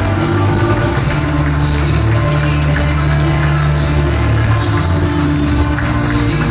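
Loud dance music playing, with a steady bass line.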